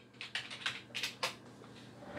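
Typing: a short run of about six quick key clicks over the first second or so, then it stops.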